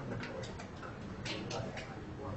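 Several faint, irregular light clicks, about seven in two seconds, over a low background murmur.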